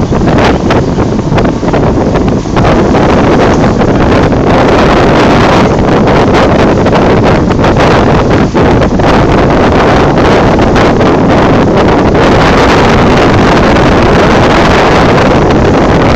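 Strong wind buffeting the microphone on the open deck of a moving boat, a loud, steady rush that masks everything else, more uneven for the first couple of seconds.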